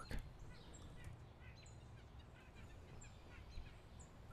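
Near silence: faint room tone with a low hum and a few faint, brief high chirps.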